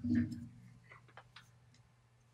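A few light, scattered clicks over a steady low hum, after a brief low sound at the very start.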